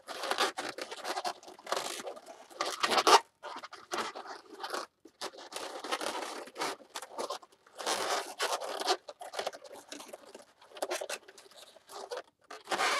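Latex twisting balloons squeaking and rubbing against each other as they are twisted and squeezed into place by hand, in irregular scratchy bursts, loudest about three seconds in.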